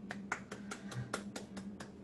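One person clapping quickly and evenly, about five claps a second, heard faintly over a video call with a steady low hum underneath.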